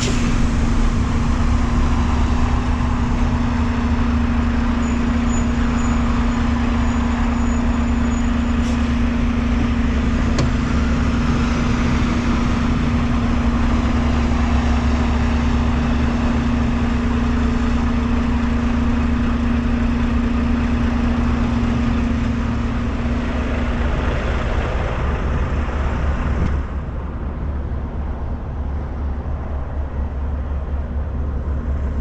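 Semi truck's diesel engine running as the truck rolls slowly, a steady deep drone with a strong hum. The hum fades out a little after twenty seconds in, and the sound gets quieter a few seconds later.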